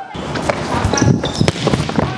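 Volleyball being played on an indoor court: a run of sharp ball contacts and footfalls, with brief sneaker squeaks on the floor, echoing in a large gym hall.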